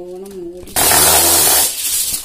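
Aluminium foil handled and crinkled close to the microphone: a loud rustling burst lasting about a second, shortly after a brief bit of voice.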